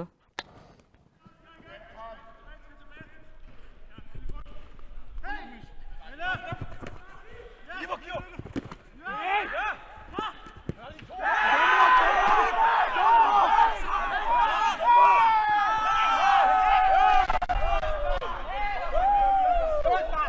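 Football match sound: players' calls and a few ball kicks, then a loud burst of many voices shouting and cheering about eleven seconds in as a goal goes in, carrying on through the celebration.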